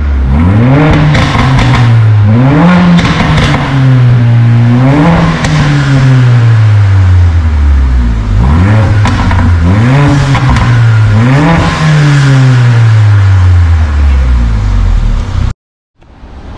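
Mercedes-AMG A45's turbocharged 2.0-litre four-cylinder engine revved repeatedly while stationary, about five times. Each rev climbs quickly and falls back slowly, heard from behind the car at the exhaust. The sound cuts off abruptly just before the end.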